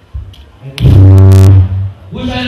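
A man's loud, drawn-out bellow into a handheld microphone, held at one pitch for about a second and distorted by the overloaded microphone. It is the cry of a man in what is held to be spirit possession.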